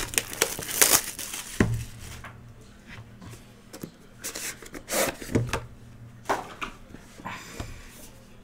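A sealed trading-card hobby box being opened by hand: crinkling and tearing of packaging, loudest in the first second or two, then scattered scrapes and light knocks of cardboard being handled.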